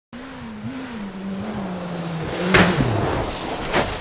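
Skoda Fabia S2000 rally car's engine running hard at a steady, wavering pitch. About two and a half seconds in comes a loud crash as the car strikes something and has its rear corner torn off, and the engine note drops away. A second sharp knock follows near the end.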